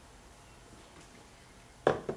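Quiet, then near the end a single sharp knock as a drinking glass is set down on a table.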